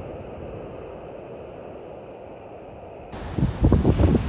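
Low, steady wash of surf breaking on a sandy beach. A little after three seconds in it cuts abruptly to loud gusts of wind buffeting the microphone.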